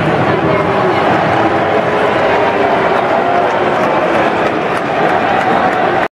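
Loud, steady din of a large stadium crowd, many voices blending together.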